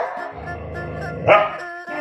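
A dog gives one short bark a little over a second in, over steady background music.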